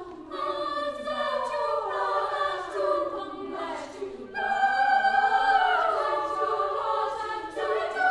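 Girls' choir singing in several parts, the voices moving and gliding between notes, with a louder entry about four seconds in.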